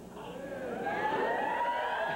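Studio audience whooping and ooh-ing: many voices gliding up and down together, building about half a second in and holding.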